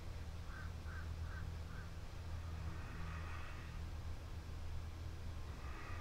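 A steady low hum with four faint, short bird-like calls in the first two seconds.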